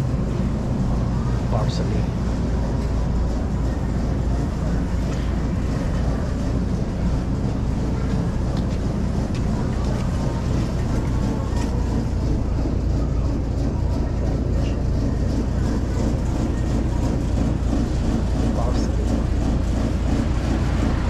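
Steady low rumble of supermarket background noise, even throughout, with a few faint distant voices.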